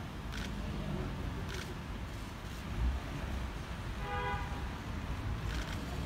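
Steady low rumble of a coach's engine idling, with a short steady tone about four seconds in.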